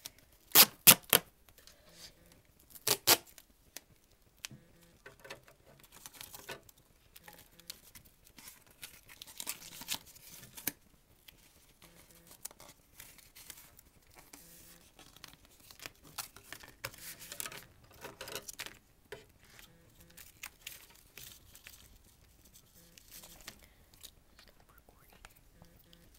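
Duct tape pulled off the roll and torn in a few loud, sharp rips near the start, followed by softer crinkling and rubbing as the tape is handled and pressed onto cardboard.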